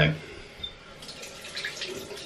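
Bathroom tap running water into the sink with light splashing, growing a little louder about a second in.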